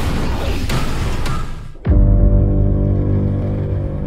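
Film sound effect of a fireball roaring for about two seconds, then a deep boom hit that opens a held low music chord, slowly fading.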